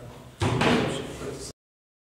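A sudden loud thud or bang about half a second in, ringing off for about a second in the room. Near the end the sound cuts out completely, a dropout in the recording.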